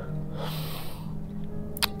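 A woman's audible intake of breath, about half a second long, during a pause in her speech, over a low steady drone of background music.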